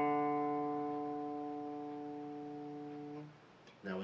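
Open D string of a solid-body electric guitar plucked once and left ringing as a single sustained note, played to check its tuning; it fades slowly and is damped about three seconds in.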